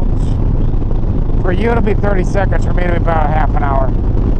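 Harley-Davidson Sport Glide V-twin running at steady highway cruising speed, with constant engine and wind noise. From about a second and a half in until near the end, a voice talks over it.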